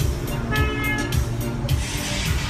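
Music played loudly through loudspeakers, with a steady bass beat and a sustained melody line in the middle.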